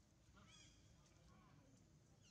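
Faint, short, high-pitched animal calls, one about half a second in and a lower, shorter one a second later, over a quiet background.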